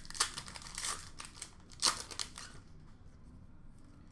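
Wrapper of an Upper Deck hockey card pack crinkling and tearing as it is opened by hand. Sharp crackles come in the first two seconds, the loudest just before the two-second mark, then give way to quieter rustling of cards being handled.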